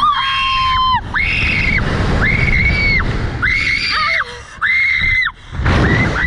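Two female riders on a slingshot ride screaming as they are launched upward: about five long held screams, the first with both voices together, breaking into shorter cries near the end, over a low rush of wind on the microphone.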